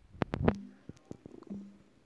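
A quick cluster of sharp taps and knocks, loudest about half a second in, from fingers on a phone and handling it while typing on the touchscreen. Each is followed by a short low hum held at one pitch, heard twice, with a few faint ticks between.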